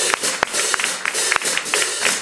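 Audience clapping: sharp separate hand claps over a light haze, with no band playing underneath.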